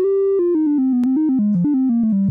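Unfiltered sawtooth-wave synthesizer tone from a software voltage-controlled oscillator, played from a MIDI keyboard. It holds one higher note for about half a second, then plays a quick run of short notes that mostly step downward.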